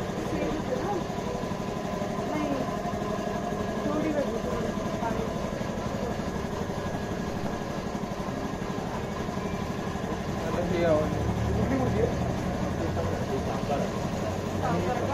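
Indistinct background voices of people talking over a steady low hum; a deeper rumble comes in about ten seconds in.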